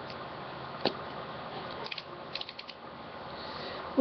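A lip gloss tube being handled and its cap twisted open: a single click about a second in, then a quick run of small ticks near the middle, over a steady background hiss.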